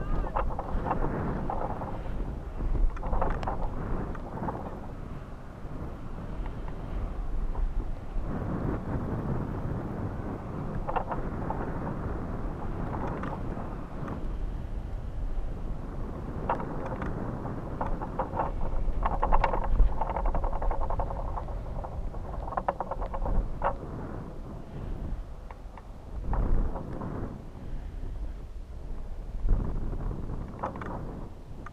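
Wind buffeting the microphone of a camera on a rising high-altitude balloon payload: a rough, low rumble that swells and fades every few seconds, with bursts of scratchy crackling.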